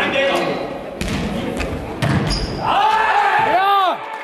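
A Faustball bouncing and being struck in an echoing sports hall, with sharp impacts about once a second. From a little past halfway, loud shouting voices rise and fall in quick repeated calls.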